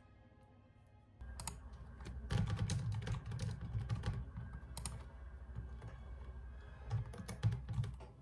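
Typing on a computer keyboard: a quick, dense run of key clicks and taps that starts about a second in. Faint soft music comes before it.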